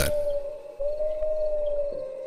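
A single pure held tone from a horror audio drama's sound design: two long notes, each bending slightly up and back down, the second ending near the close.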